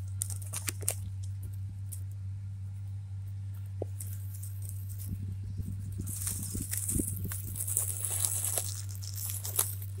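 Fern fronds and garden foliage rustling and brushing against a handheld phone, with small handling clicks. The rustling thickens about six seconds in and lasts for about three seconds. A steady low hum runs underneath.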